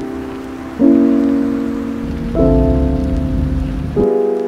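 Gentle background music of sustained chords, a new one struck about every second and a half and fading away, laid over a steady sound of rain. A low rumble joins in the second half.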